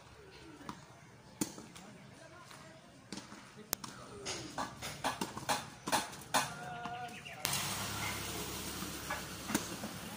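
Tennis balls struck by rackets during a doubles rally: sharp pops, first a couple of seconds apart and then in a quicker cluster, with players' voices faintly audible. A steady rushing noise sets in suddenly about three-quarters of the way through.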